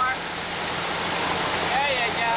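Steady rush of wind and engine noise inside a jump plane with its door open, with a man's voice briefly near the start and again near the end.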